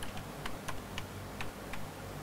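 Typing on an Apple laptop keyboard: a run of light, irregularly spaced keystroke clicks, about seven in two seconds.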